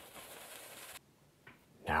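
Faint scrubbing of a bristle brush on canvas, cutting off suddenly about halfway through into near silence.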